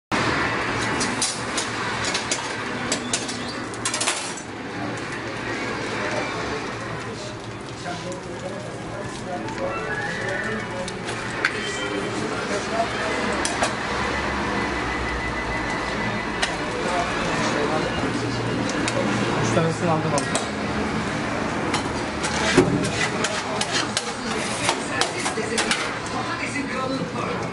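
Kitchen clatter of metal utensils and dishes over a background of voices, with sharp knife taps on a wooden cutting board coming thick near the end.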